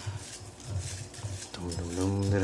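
Folded paper slips rustling as a hand stirs them around in a glass bowl. Near the end a man's low wordless voice starts.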